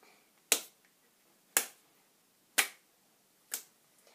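Four sharp hand slaps, one about every second, the last one fainter: open hands striking another child's held-out hands, the penalty strokes for losing a round of a rock-paper-scissors slapping game.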